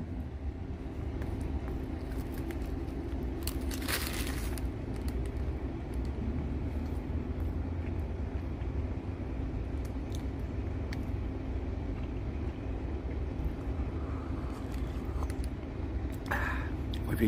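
Steady low rumble of a vehicle engine idling nearby, with a constant hum. A brief hiss comes about four seconds in, over faint close-up chewing.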